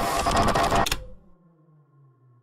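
MRI scanner running a scan: loud, rapid mechanical knocking that cuts off abruptly about a second in, leaving only a faint low hum.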